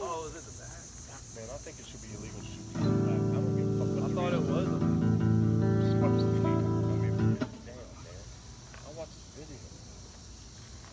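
An amplified electric guitar: a chord strummed about three seconds in and left ringing for about four seconds, then damped suddenly.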